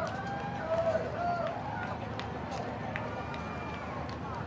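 Several people's voices calling out in drawn-out tones over outdoor crowd noise, with scattered sharp clicks; no band music is playing.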